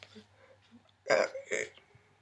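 A woman's voice: two short, loud vocal sounds a little over a second in, not recognisable as words.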